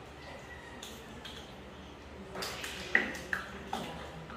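Plastic measuring spoons clicking and clattering as they are handled and separated. There are a few light clicks, a brief scraping rustle, then three sharp clicks near the end, the first the loudest.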